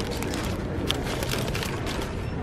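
Plastic-wrapped sticker pack crinkling, with a few light clicks, as it is put into a shopping cart, over a steady background hiss of handling and store noise.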